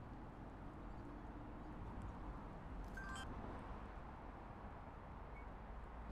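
Faint, steady ambient background noise with no motor or voice, broken by a brief high chirp about three seconds in.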